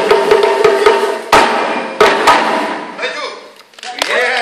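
Live African hand-drum ensemble playing a fast passage over sustained pitched notes, then breaking off on two loud unison strikes about one and two seconds in. The ringing dies away before the end, closing the piece.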